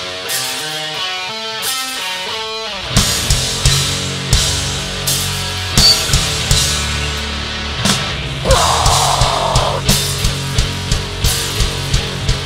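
Heavy hardcore band playing live and loud. A lone guitar picks out a run of stepping notes for about the first three seconds, then the full band comes in with distorted guitars, bass and pounding drums.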